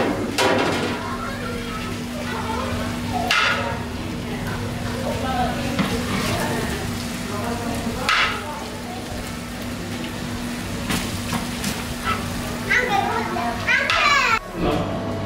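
Biryani being served from a large aluminium pot: a few short scrapes of a serving spoon against the pot, about a third of the way in and again past halfway. Underneath runs steady background noise with a low, even hum.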